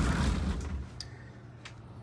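A glass coin showcase being handled: a brief low sliding rumble under a second long, then two light clicks as a coin tray is taken out.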